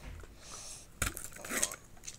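Hard plastic toy capsule being handled and opened: light plastic clinks, with one sharp click about a second in, then a short rustle as a printed wrapper inside is pulled out.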